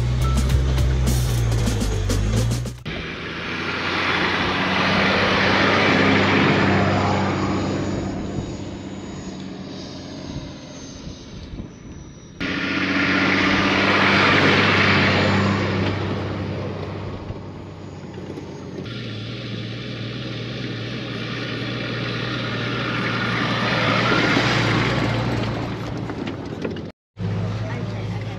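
Four-wheel-drive vehicle driving on dirt tracks: a steady engine drone with tyre and road noise that swells up and fades away twice, then runs on more evenly. It cuts out briefly near the end.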